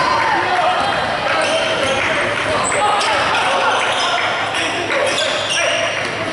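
A basketball dribbled on a hardwood gym floor, under the voices of players and spectators echoing in the gym.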